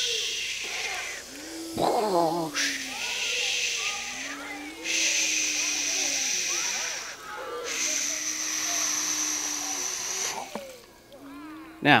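People making storm sounds with their voices: long whooshing hisses and wavering 'wooo' wind cries, coming in stretches with short breaks. Under them, water is poured from a jug into a plastic tub and splashes.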